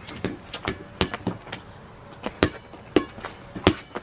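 Rubber playground ball bouncing on a concrete driveway and being slapped back and forth by hands: a string of about eight sharp smacks at uneven spacing.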